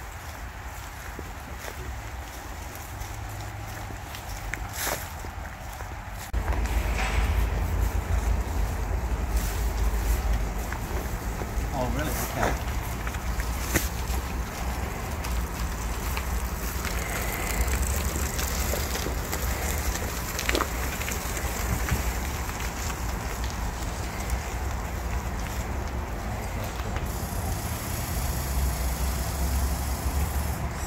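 Low rumble of wind on the microphone, louder from about six seconds in, over a handcycle's wheels rolling on a crushed-stone trail, with a few faint clicks.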